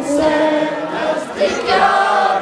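Several voices chanting a Muharram noha, a mourning elegy, together in chorus.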